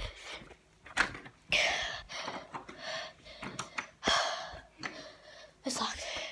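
Out-of-breath gasps and hard breathing in several short bursts, after a run. A couple of sharp clicks also sound, about a second in and about four seconds in.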